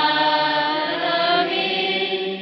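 Chanted prayer during a church service: voices singing in long held notes that step to a new pitch every second or so.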